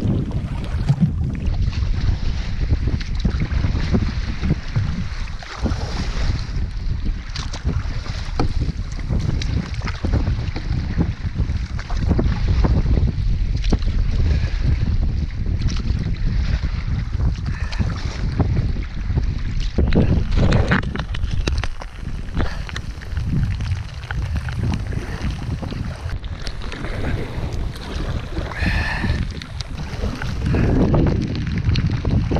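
Strong wind buffeting the microphone while a canoe is paddled through choppy water, with water splashing around the hull.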